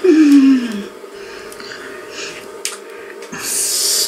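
A person's voice giving a loud groan that falls in pitch over the first second, followed by quieter breathing with a couple of faint clicks.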